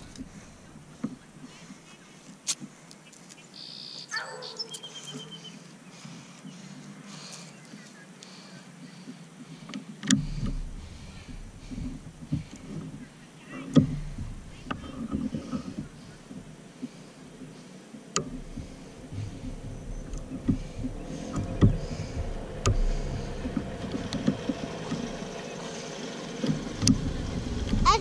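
Side-by-side utility vehicle's engine approaching, growing steadily louder over the last several seconds, over low wind rumble on the microphone and a few scattered knocks.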